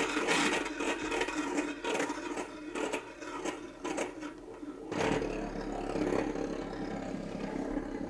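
Toy gyroscope spinning on its pedestal stand, its rotor whirring steadily.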